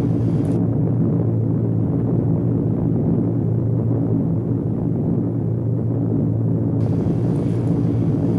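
Steady, loud low drone of B-24 Liberator bombers' four-engine radial piston engines flying in formation.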